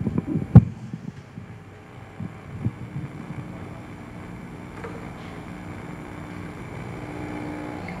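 Microphone handling noise: a cluster of knocks and thumps as the mic is gripped and adjusted on its stand, the loudest about half a second in. After that a faint steady hum runs through the public-address system.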